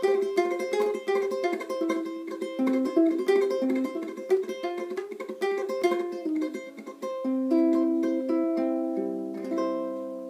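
Low-G ukulele played fingerstyle with a flamenco tremolo at full speed: the thumb picks the melody while ring, middle and index fingers rapidly repeat a note after each one. About seven seconds in the run stops on a chord left ringing, with a few last low notes plucked into it as it fades.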